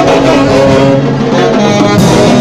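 Live saxophone band playing loud dance music, held notes over a steady accompaniment.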